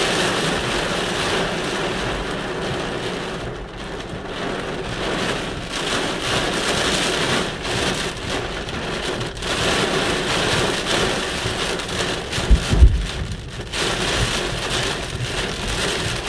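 Heavy rain pouring onto a car's roof and windshield, heard from inside the cabin as a dense wash of noise that swells and eases in waves. About three-quarters of the way through comes a brief deep boom, the loudest moment.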